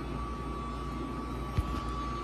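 Steady low background hum with a thin steady high tone over it, and a single short knock about a second and a half in.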